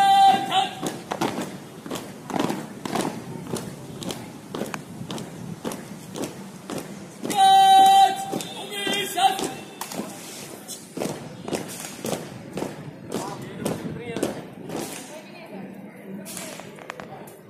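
A shouted drill command, one long drawn-out call held on a steady pitch a little before the middle, followed by a shorter voice, among scattered thuds and knocks of rifle drill and boots on concrete.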